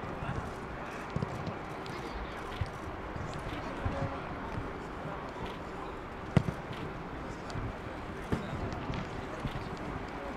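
Outdoor football training-ground ambience: indistinct distant voices over a steady background hiss, broken by scattered short thuds, the loudest about six seconds in.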